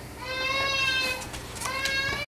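A young child's high-pitched, drawn-out wordless vocal sound, about a second long, rising and then falling in pitch, with a second one starting near the end.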